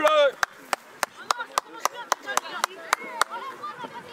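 A spectator clapping hands in a quick, even rhythm, about three to four claps a second, to cheer on a youth football team, stopping about three seconds in. Voices shout faintly between the claps.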